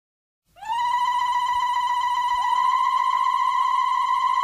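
Music opening with one long, high held note on a melodic instrument. It slides up into pitch about half a second in and scoops up again midway, wavering slightly.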